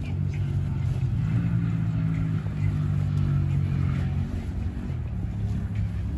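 A low, steady engine drone that shifts slightly in pitch about a second in and again near the end.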